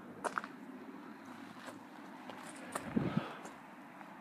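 Faint footsteps and handling of a handheld camera against quiet outdoor background noise. There are a few light clicks just after the start and a short low sound about three seconds in.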